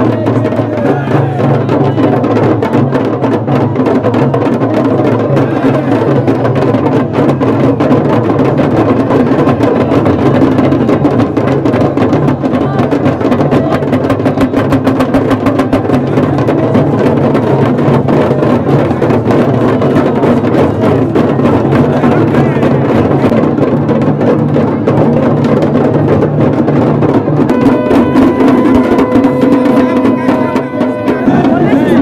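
Loud, fast, continuous drumming from procession drums, dense with strokes. Near the end a long steady note comes in over the drums.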